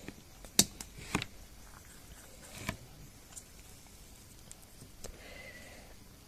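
A few sharp clicks and knocks, the loudest about half a second in, as a phone circuit board is seated and clamped in a metal PCB holder.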